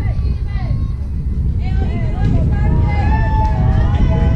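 Distant voices of softball players and spectators calling out, drawn-out shouts strongest in the second half, over a steady low rumble of wind on the microphone.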